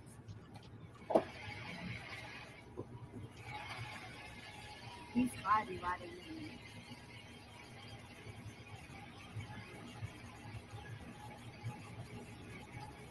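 Low steady hum of a diesel truck engine heard from inside the cab. A short, high-pitched voice cry comes about five seconds in.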